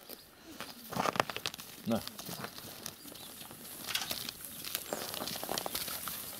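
Sheep chewing carrot sticks, an irregular run of short crisp crunches and crackles.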